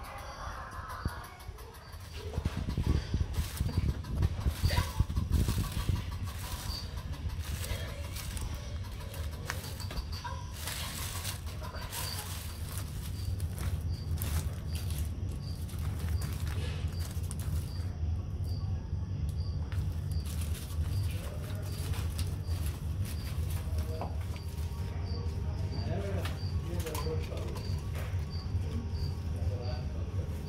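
Three-banded armadillo foraging in dry bark-chip mulch and leaves: irregular rustling, scratching and crackling, busiest in the first half, over a steady low hum.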